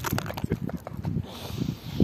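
A large brindle dog moving and breathing right over the microphone: irregular close puffs and knocks, turning to a hissing rustle in the second half.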